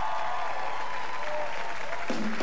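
Television studio audience applauding steadily, with a few cheering voices held over the clapping.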